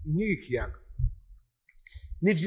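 A man's voice: a brief utterance at the start, a short pause, then a few faint mouth clicks just before he speaks again.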